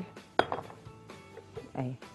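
A sharp clink of kitchenware being handled on the counter, a bowl set down, followed by a few faint knocks, over soft background music.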